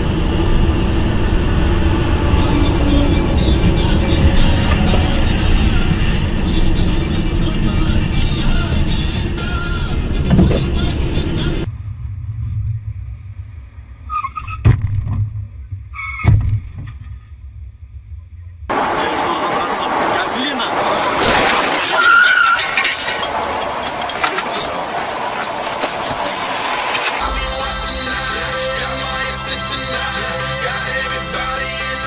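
In-car dashcam sound of traffic: steady road and engine noise, then a quieter stretch with two sharp knocks about halfway through. Dense noise returns, and music with steady tones comes in near the end.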